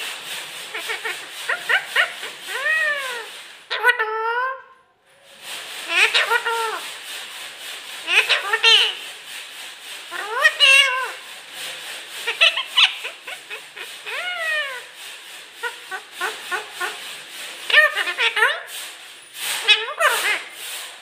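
Talking rose-ringed parakeet (Indian ringneck) making a long string of speech-like calls, each one rising and then falling in pitch, one every second or two, with a brief pause about five seconds in.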